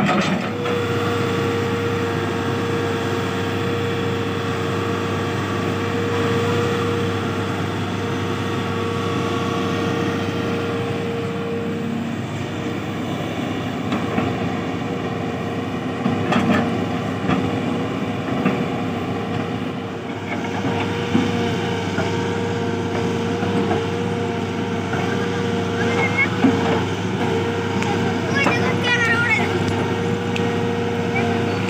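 Tata Hitachi Zaxis 210LCH excavator's diesel engine running steadily under digging work, with a steady whine over the engine hum.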